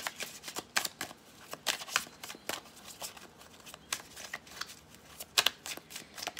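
A deck of tarot cards shuffled by hand: a run of irregular card clicks and flicks, with the sharpest snap about five and a half seconds in.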